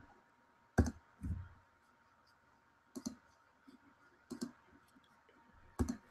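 Computer mouse clicking: about four single, sharp clicks spaced a second or more apart, with near silence between them.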